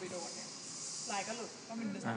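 A woman talking in short phrases over a steady high hiss.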